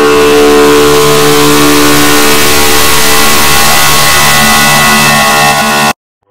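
Loud, heavily distorted electronic audio: several steady held tones buried in harsh hiss, cutting off suddenly near the end.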